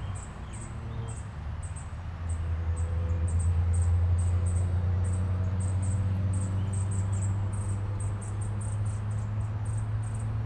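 A steady low hum, like a motor or appliance running, louder from about two seconds in, under a faint high chirp that repeats about two or three times a second, like an insect.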